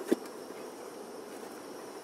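An aluminium Trangia pot clanks once as it is set back down as a lid over the frying pan. Under it runs the steady hum of the gas burner heating the pan.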